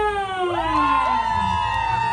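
A few people cheering with long, drawn-out shouts that overlap, held for about two seconds and sliding slightly down in pitch.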